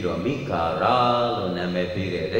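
A Buddhist monk's voice chanting a verse in a recitation cadence, with longer held notes than his ordinary speech.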